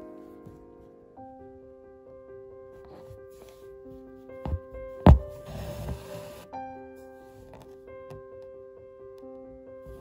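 Gentle background music of held, sustained notes. Just past the middle there is a light tap, then a louder sharp pop followed by about a second of rustling, as an embroidery needle punches through fabric stretched in a hoop and the thread is drawn through.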